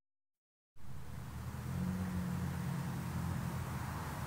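Road traffic: a steady vehicle engine hum that comes in about a second in, after a moment of silence.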